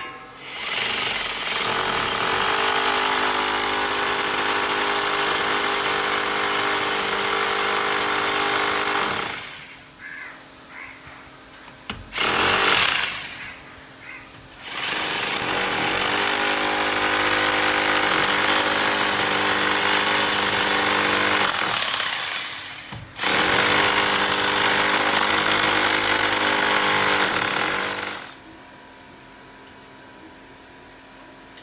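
Electric hammer drill boring into a wall, run in four bursts: a long one of about eight seconds, a short one, then two more of about six and five seconds. Each burst is a rattling hammer action over a steady motor drone, and the drill winds down in between.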